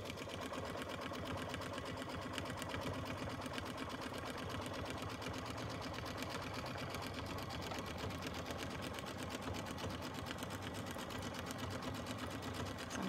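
Baby Lock Solaris embroidery machine stitching a tack-down outline through thick layers of fabric and batting, slowed down to about 500 stitches a minute: a steady, rapid, even run of needle strokes.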